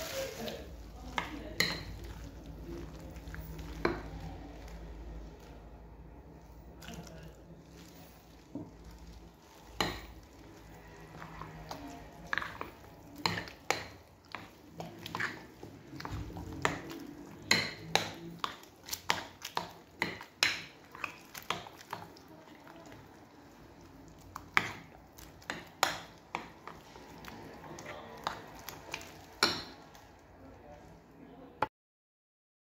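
Metal wire whisk stirring a thick batter in a glass bowl, its wires clinking irregularly against the glass, in quick runs through the second half. A low steady hum lies under the first few seconds.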